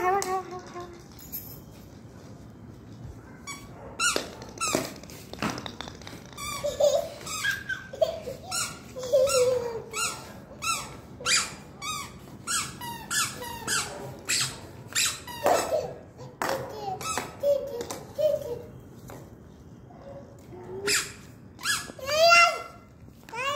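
A toddler's squeaky shoes squeaking with his steps, one or two short high squeaks a second. Sharp knocks of a plastic toy bat striking a ball and the tile floor come now and then.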